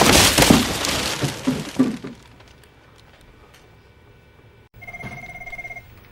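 Gift-wrapping paper being torn and crumpled in a loud rush for about two seconds. Near the end, an office desk phone rings once, a warbling electronic trill lasting about a second.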